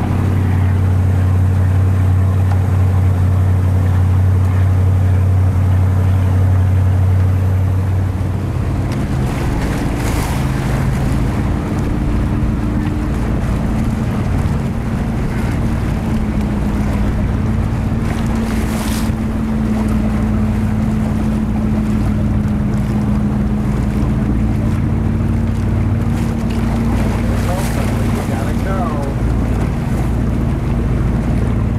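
Motorboat engine running steadily under way, with water rushing past the hull and wind on the microphone. The engine's low hum changes note about eight seconds in.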